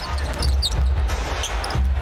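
Basketball game court sound: a ball being dribbled on a hardwood floor, with a few short sneaker squeaks and arena music with a pulsing bass underneath.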